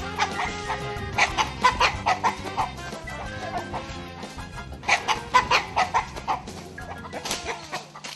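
Chickens clucking and squawking in two flurries, about a second in and again around five seconds, as they are chased to be put away, over a soft music bed.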